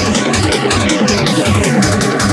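Hard techno from a DJ mix: a fast, steady kick drum pounding in an even rhythm, with percussion ticking above it and dense, distorted synth layers.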